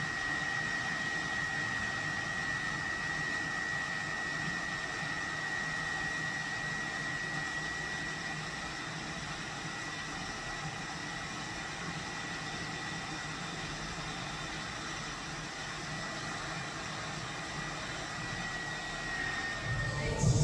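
A hair dryer running steadily: an even rush of air with a thin, steady high whine.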